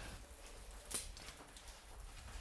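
Quiet background hush with one short, sharp click about a second in and a couple of fainter ticks.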